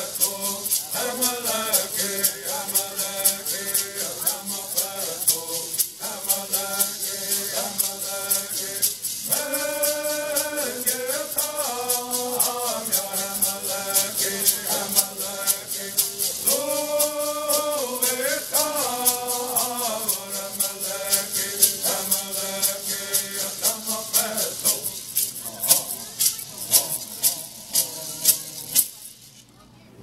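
Cahuilla bird song: a group of voices singing in repeated phrases over a steady, quick beat of shaken hand rattles. Near the end the rattle strokes slow to a few last shakes and the song stops.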